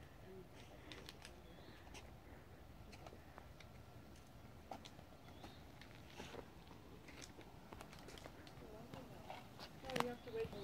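Near silence, with faint scattered clicks and ticks throughout.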